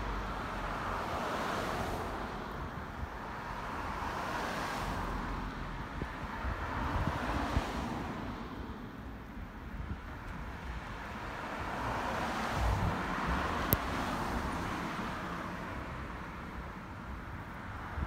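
Road traffic on a city street: several cars pass one after another, each a swell of tyre and engine noise that rises and fades. There is one sharp click about three quarters of the way through.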